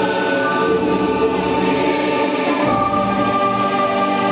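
Music: a choir singing slow, long held notes.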